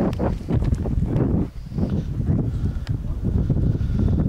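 Wind buffeting the camera's microphone, a steady low rumble, with a few soft knocks from the camera being carried.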